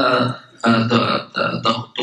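Speech only: a man speaking in short phrases through a microphone, most likely the scholar speaking Arabic between translated passages.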